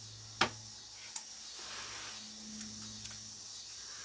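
Faint rustling and rubbing of a synthetic pixie wig being pulled down and settled on the head by hand, with a sharp click about half a second in and a softer click a little later.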